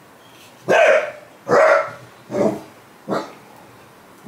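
A dog barking four times, each bark under a second after the last and quieter than the one before.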